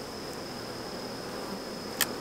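Honeybees buzzing steadily around an open hive, with a short knock near the end as a wooden honey super is gripped and lifted.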